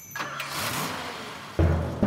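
Cartoon vehicle engine sound effect, a short rising swell of engine noise over a low steady hum, followed by upbeat music with a strong beat coming in near the end.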